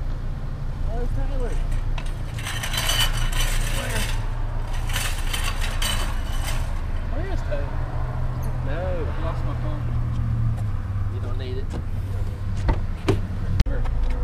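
Car engine idling steadily close by, a low even rumble, with two stretches of clattering noise a few seconds in, faint voices, and a few sharp clicks near the end.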